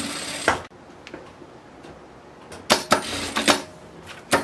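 Jack A4E industrial lockstitch sewing machine stitching a seam, then stopping abruptly with a sharp click about half a second in. A few sharp clicks follow near the end.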